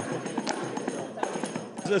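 Small hand-held frame drum struck with the fingers in a quick, irregular run of strokes, with sharp slaps about half a second in and a little past a second.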